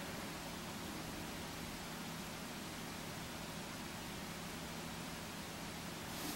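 Steady, low, even hiss of room tone with a faint hum underneath; nothing else happens.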